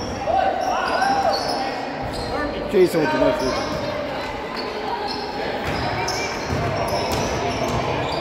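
A basketball being dribbled on a hardwood gym floor, with short high sneaker squeaks as players run. Everything echoes in a large gym.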